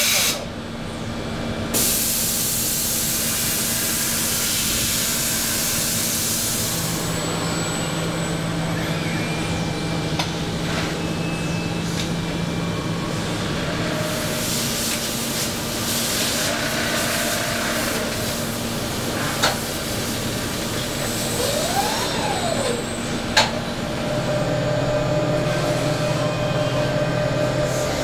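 Factory machinery running: a steady mechanical hum with hissing like compressed air, a few sharp clicks, and a short whine that rises and falls a little past the middle.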